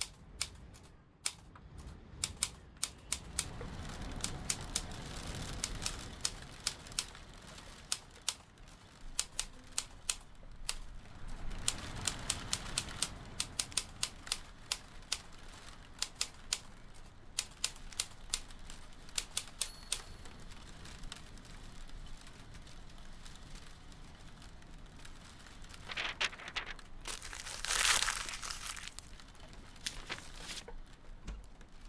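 Manual typewriter keys striking in irregular runs of sharp clicks, with pauses between runs. Near the end comes a louder rustling rasp lasting about a second.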